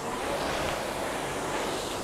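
Concept2 RowErg's air-resistance flywheel fan whooshing steadily as the machine is rowed hard.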